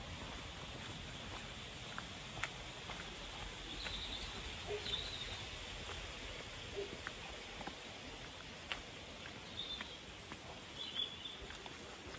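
Quiet outdoor ambience: a faint steady hiss with scattered light ticks and rustles of footsteps through undergrowth, and a few short, high bird chirps.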